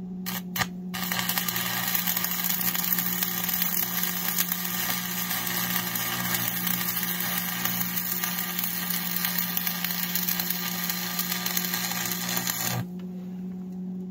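Stick-welding arc burning a 6013 rod: a few short strikes as the arc is started, then about twelve seconds of steady, dense crackle that cuts off suddenly near the end. A steady low hum runs underneath throughout.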